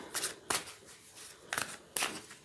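A deck of tarot cards being shuffled by hand: a few short, crisp card slaps spaced irregularly.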